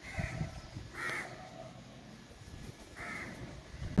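A bird calling three times in short calls: one at the start, one about a second in and one near the end, over a quiet background.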